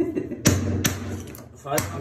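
Claw hammer striking a hatchet blade set against old vinyl composition floor tiles to chip them loose: three sharp metallic blows, the first two close together and the third after a short pause.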